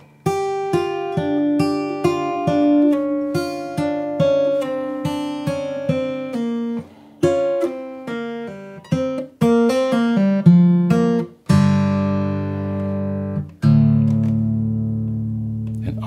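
Martin J-40 acoustic guitar in open G tuning, fingerpicked: a blues lick of single notes and double stops with slides, hammer-ons and pull-offs, ending on two low chords left to ring.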